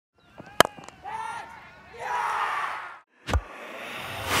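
A cricket ball cracks off the bat, followed by shouting voices and crowd noise. Near the end a deep boom and a rising whoosh from a broadcast graphic sound effect.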